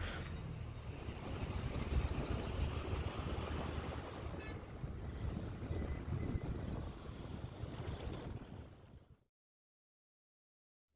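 Motorcycle engine running with rushing wind and buffeting on the microphone, as heard from a moving bike. The sound cuts off suddenly about nine seconds in.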